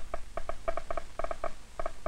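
Irregular snaps from a loudspeaker fed through an amplifier by a transistor alpha-particle detector, about ten a second. Each snap is one alpha particle from a polonium source striking the detector.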